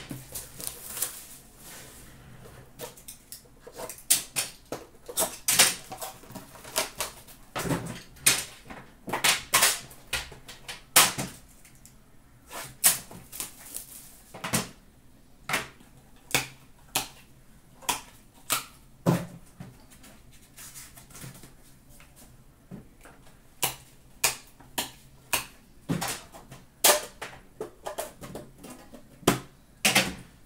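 Irregular clicks, taps and rustles of hands working a metal trading-card tin: the tin and its lid clacking as they are opened and set down, and cards being slid out and handled.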